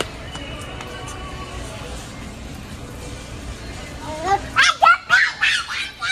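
Steady supermarket background hum, then, near the end, a toddler's high-pitched voice: five or six short, loud calls or squeals in quick succession, without clear words.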